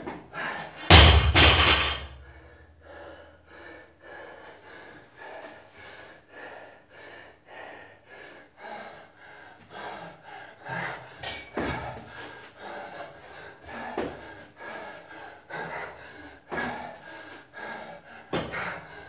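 A loaded barbell dropped onto the floor about a second in, landing with a heavy thud and a deep rumble. It is followed by the lifter's hard, rapid breathing, a breath about every half second while he works on the pull-up bar.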